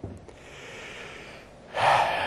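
A man breathing close to the microphone: a soft breath, then a sharp in-breath near the end.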